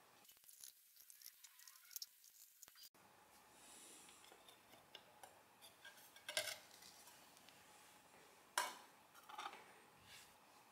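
Faint metal clinks and scrapes as the front cover plate of an industrial counter is worked loose and lifted off, with a couple of louder knocks about six and eight and a half seconds in.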